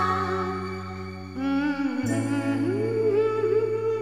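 Closing bars of a Hindi film love song: a voice humming 'la la la, hmm hmm' over long held low chords. The wavering humming line comes in about a second and a half in.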